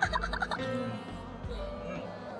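A woman's burst of laughter, a quick run of ha-ha pulses that stops about half a second in, over soft background music.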